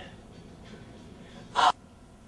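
A low, quiet room tone, then a single short, sharp intake of breath about one and a half seconds in.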